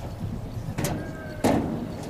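Two sharp knocks about half a second apart, the second louder, with a brief ringing tone after the first, over steady outdoor background noise.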